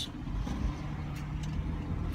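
Steady low rumble of a car heard from inside the cabin, with a faint steady hum from the engine.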